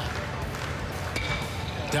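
Aluminum bat striking a pitched baseball a little over a second in, a sharp crack with a short ringing ping, over steady stadium crowd noise.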